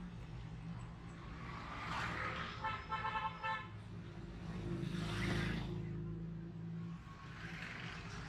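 Street traffic: motorcycle and car engines running by, swelling as vehicles pass close. About three seconds in, a vehicle horn sounds a quick run of short toots.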